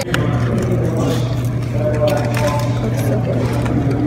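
A laugh and a short word, then indistinct background talk over a steady low hum.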